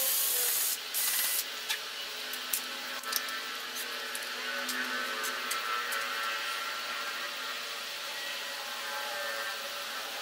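Cordless drill boring into pallet wood in short runs, stopping about a second and a half in. After that come scattered light clicks and knocks.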